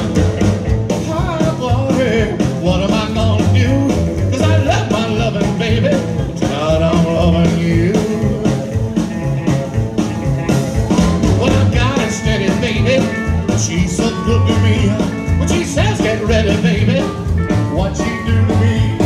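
Live rockabilly band playing: a slapped upright bass keeps a steady pulsing beat under acoustic rhythm guitar and electric lead guitar.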